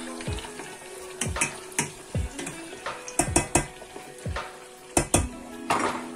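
Pieces of liver frying in hot oil in a stainless steel saucepan: a steady sizzle broken by irregular sharp pops and crackles.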